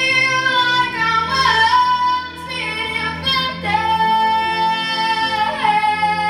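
A young girl sings a ballad over a backing track, holding long notes and sliding in pitch between them; the biggest slide down comes about four seconds in.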